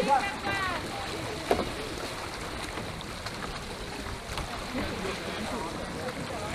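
Wind and water noise aboard a Venetian rowing boat under oars, with voices calling in the first second and again faintly near the end, and a single sharp knock about a second and a half in.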